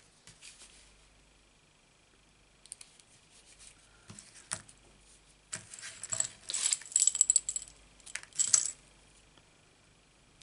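Scissors with a beaded metal keyring charm picked up and set down on a craft mat, the charm jangling and clinking in several bright clusters in the second half. Before that come faint ticks and rustles of small paper pieces being handled.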